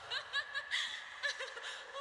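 A woman's high-pitched laughter in quick, short giggles.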